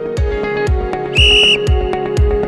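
Electronic background music with a kick drum about twice a second; a little over a second in, a short, loud, steady whistle blast cuts in for about a third of a second, the signal that starts the timed drill.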